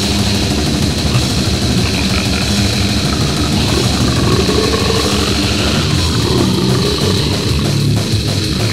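Deathgrind music: distorted electric guitars, bass and drums playing loud and dense.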